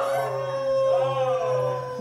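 A howl that rises and falls, over a steady held tone of eerie background music.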